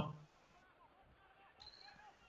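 Near silence: a man's voice trails off at the very start, then room tone, with a faint brief sound near the end.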